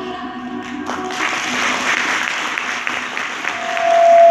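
Stage music cuts off, and about a second later an audience breaks into applause. One long high tone rises from the crowd near the end.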